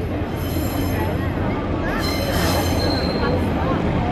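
Northern diesel multiple unit rolling through a level crossing: a steady low engine and rail rumble with high-pitched wheel squeal, strongest in the second half.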